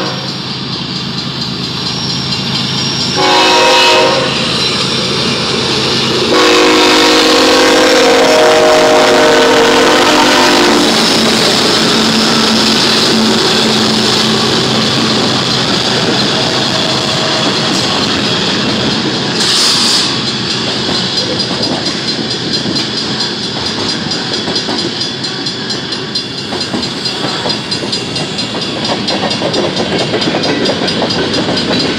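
BNSF diesel freight locomotive air horn sounding a short blast and then a long blast, the closing notes of the grade-crossing signal, as the lead units reach the crossing. Then the locomotives and the freight cars roll past with a steady rumble and the clickety-clack of wheels over rail joints, with a brief hiss about two-thirds of the way through.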